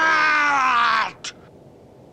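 A man's loud, drawn-out yell of rage from a cartoon villain. It falls in pitch and is cut off abruptly about a second in, followed by a brief click and then faint hiss.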